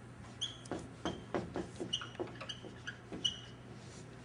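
Dry-erase marker squeaking on a whiteboard as a word is written and underlined: a quick run of short squeaky strokes, the loudest near the end.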